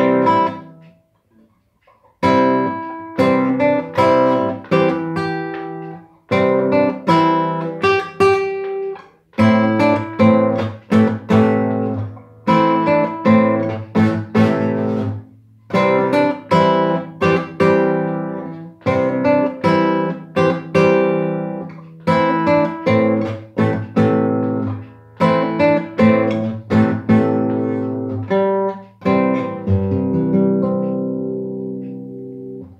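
Nylon-string classical guitar played solo: a short, simple melody picked note by note with chords underneath, in phrases separated by brief pauses. It opens with a single chord and a pause of about two seconds, and ends on a chord left ringing.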